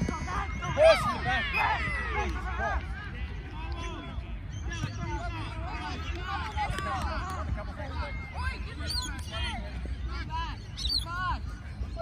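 Several voices of players and spectators calling and shouting over one another across a football pitch, with a sharp loud knock about a second in, all over a steady low rumble.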